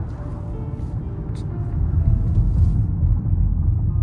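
Low, steady rumble of tyres and drivetrain heard inside the cabin of a 2016 Rolls-Royce Wraith cruising on low-profile tyres, swelling slightly about two seconds in.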